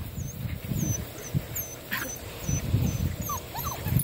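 A Cardigan Welsh corgi and a litter of tervoodle puppies play-fighting in a scrum: bursts of low rumbling from the tussle, with a few short high puppy whines near the end.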